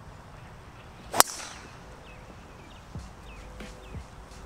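Golf driver swung and striking a ball off the tee about a second in: a brief rising whoosh ending in one sharp, loud crack at impact.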